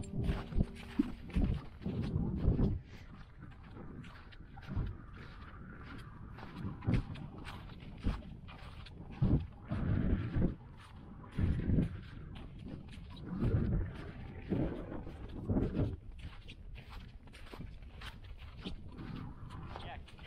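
Footsteps of boots with crampons crunching through soft glacier snow, an irregular step about once a second, with low wind noise on the microphone between steps.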